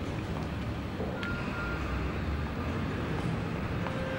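Steady low background rumble of a busy restaurant's room tone, with a faint click about a second in.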